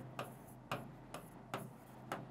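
Marker pen writing on a whiteboard: a handful of short, faint, irregularly spaced scratchy strokes as letters are written.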